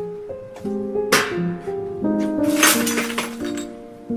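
Music: a simple melody of short held notes, with two brief sharp noisy hits about one second and two and a half seconds in.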